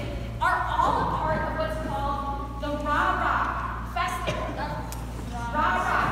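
A woman speaking in a large hall, over a steady low hum.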